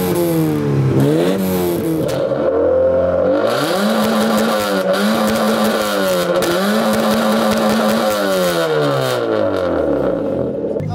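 Car engine revved hard through an aftermarket exhaust for a loudness measurement at the tailpipe. It is blipped quickly several times at first, then held at high revs in a few long, steady pulls with short dips between them, and it drops back near the end.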